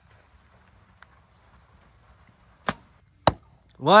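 A single bow shot: the bowstring cracks on release, and about half a second later the arrow strikes a foam target board with a louder, sharp thwack.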